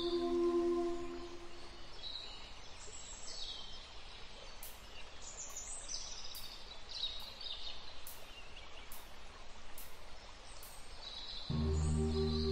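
Birds calling over a soft outdoor nature ambience, after sustained ambient music tones fade away in the first second or two. Midway comes a run of evenly spaced sharp high ticks, a little under two a second. Sustained music tones return suddenly near the end.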